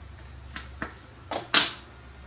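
A few faint mouth clicks, then two short, sharp intakes of breath near the end, the second the loudest, from a man pausing mid-talk, over a steady low hum.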